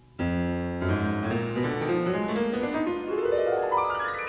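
Steinway grand piano: a loud chord is struck suddenly about a quarter second in, followed by more notes, then a fast run climbing up the keyboard through the last second and a half.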